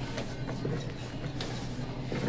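Cotton quilting fabric rustling and sliding across a cutting table as cut border strips are pulled down by hand, quiet, with one light tap about one and a half seconds in.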